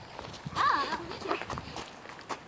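Footsteps crunching on wood-chip mulch, a few short irregular steps. A faint voice calls out briefly about half a second in.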